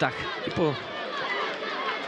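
Stadium crowd noise, a steady murmur of many voices, with a brief word of commentary about half a second in.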